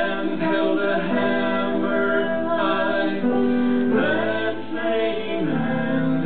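A man singing a song with long held notes into a microphone, accompanied by a grand piano.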